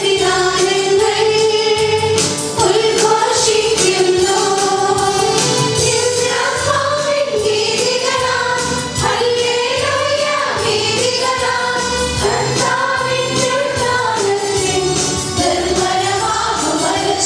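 A choir singing a hymn with musical accompaniment; the sung melody holds long, slowly moving notes throughout.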